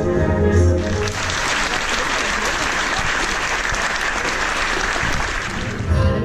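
Concert audience applauding, a dense even clapping that fills the hall once the orchestra's music breaks off about a second in. Music starts again right at the end.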